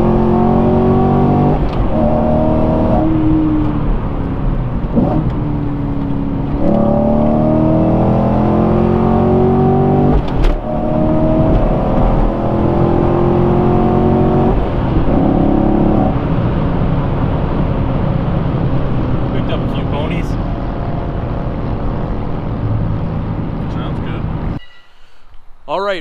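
2017 Camaro SS's 6.2-litre LT1 V8, heard from inside the cabin, running through catless off-road connection pipes with the high-flow catalytic converters removed. It accelerates under load with a throaty exhaust note, the pitch climbing and dropping back several times as it shifts up, then settles into a steadier highway cruise. The sound cuts off shortly before the end.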